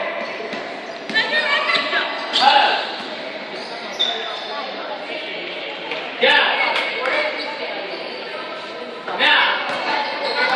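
Taekwondo students' kihap shouts during a form: four short, loud shouts about a second in, at two and a half seconds, just after six seconds and just after nine seconds, echoing in a large hall.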